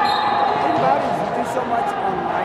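Players' voices calling out in a large echoing indoor sports hall, with a couple of faint knocks near the end.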